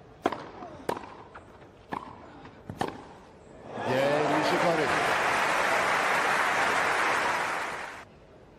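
Tennis ball struck by rackets in a rally on a grass court, four sharp hits about a second apart. Then from about four seconds in the crowd cheers and applauds loudly with shouts for the point-winning shot, cut off near the end.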